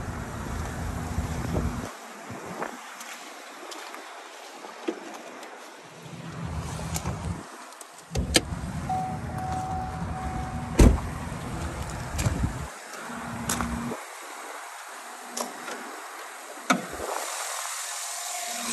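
Opening a 2009 Chevrolet Silverado's hood from the driver's door: a few sharp clicks and knocks from the door and the hood release and latch, the loudest about eleven seconds in, among spells of low rumbling handling noise. About halfway through there is a short beeping tone, broken into a few beeps.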